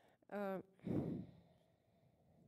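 A person's voice close to the microphone: a brief held vocal sound, then a breathy sigh that fades away.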